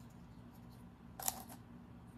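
Wooden popsicle sticks clicking faintly against each other and the teeth as a stack of them is handled between the lips, with one sharper clatter about a second and a quarter in.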